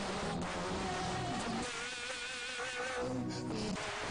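Live worship music: a lead singer and choir singing, with a long held note that wavers in pitch through the middle.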